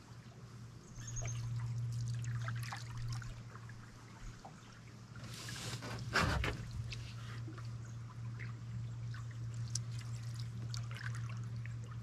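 Canoe paddle strokes in lake water, with water trickling and dripping off the wooden blade. There is a swish about five and a half seconds in, followed by a sharp knock, and a steady low hum underneath.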